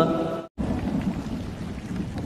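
The tail of a sung Arabic prayer for rain fades and cuts off about half a second in. Then heavy rain hisses steadily.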